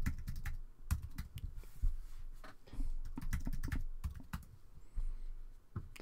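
Typing on a computer keyboard: irregular runs of key clicks with short pauses between them.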